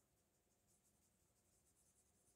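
Near silence with faint scratching of felt-tip markers colouring on paper.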